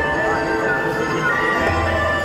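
A Chinese folk-style song played over loudspeakers: a sung melody with gliding notes over steady instrumental backing.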